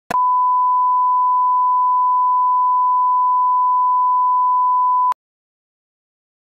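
Steady 1 kHz line-up test tone, the reference tone that goes with colour bars for setting audio level. It is held for about five seconds and cuts off suddenly, with a click as it starts and as it stops.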